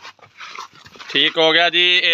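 A man's voice, starting about a second in after a faint, quiet stretch and holding a steady pitch.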